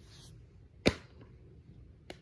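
One sharp click of a plastic DVD case being handled, a little under a second in.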